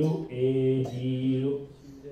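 A man's voice drawing out syllables at one steady pitch, almost chanted, trailing off about a second and a half in.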